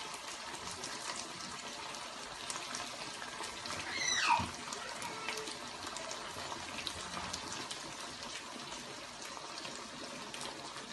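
Steady hiss of water running from a kitchen tap, with faint small clicks and taps. About four seconds in, one brief squeal falls sharply in pitch.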